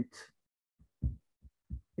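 About four short, soft, low thumps, spaced irregularly, in a pause between spoken phrases.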